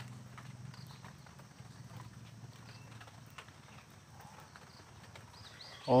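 Faint scattered clicks and scrapes of a plastic scoop knocking against a metal wok as dry spice is shaken in and stirred, over a low steady hum.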